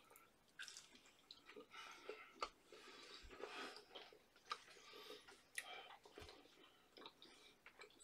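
Faint, irregular chewing of a chewy peanut butter chocolate chip granola bar, with small wet mouth clicks scattered throughout.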